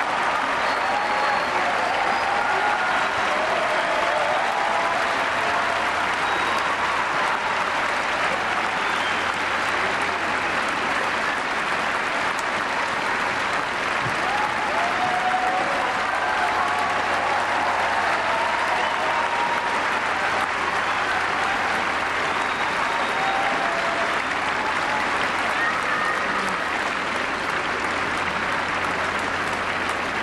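A large audience applauding steadily through a curtain call, with scattered voices calling out from the crowd.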